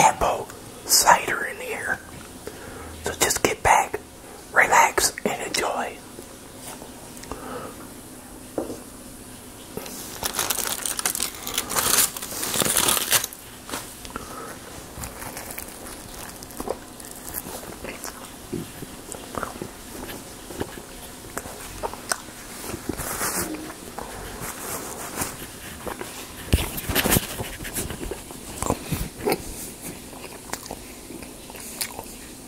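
Close-miked biting and chewing of a sausage, egg and cheese bagel sandwich, in irregular bursts of wet mouth sounds and crunches. A louder, noisy stretch comes about ten seconds in.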